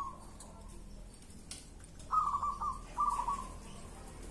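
Caged zebra doves (perkutut) cooing: short phrases of quick, evenly spaced notes, one tailing off at the start and two more about two and three seconds in.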